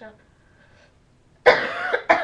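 A boy coughing, a loud, harsh cough starting about one and a half seconds in: the cough of a bad cold.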